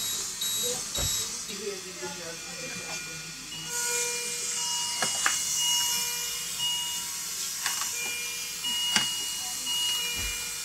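Neonatal unit equipment: steady electronic beeps from monitors and pumps sounding on and off at several pitches, over a high hiss of air flow that grows louder about four seconds in. A few soft clicks and knocks of handling are mixed in.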